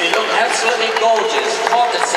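Audience applauding, the dense clapping mixed with voices.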